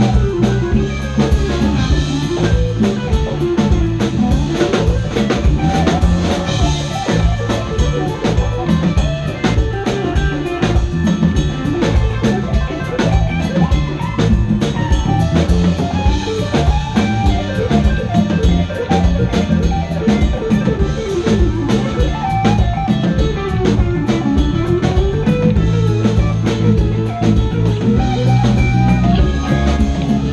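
Live band playing an instrumental passage, with guitar, bass and drum kit keeping a steady beat.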